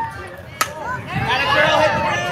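A softball bat strikes a pitched ball with a single sharp crack about half a second in, followed by spectators shouting and cheering.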